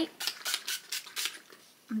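Pump-spray bottle of hair spray spritzed over the hair several times in quick succession, each a short sharp hiss, ending about a second and a half in.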